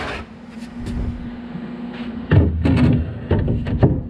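A melamine cabinet shelf being worked into a cabinet and set down onto its shelf pins: a few light clicks, then a cluster of heavy wooden knocks and clatters in the second half, over a steady low hum.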